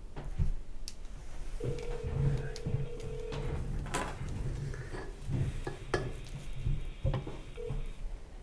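Telephone ringback heard while a call waits to be answered: a steady tone rings for about two seconds, stops, and starts again near the end. Scattered clicks and knocks of handling sound around it.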